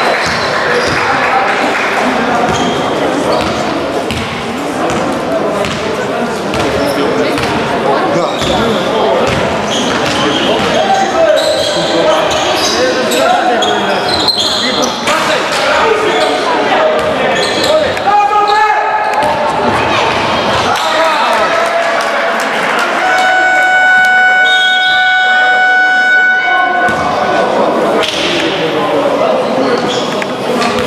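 Basketball being dribbled and played on a hard gym floor, with shouting voices echoing in a large hall. About 23 seconds in, the scoreboard horn sounds steadily for about four seconds, as play stops.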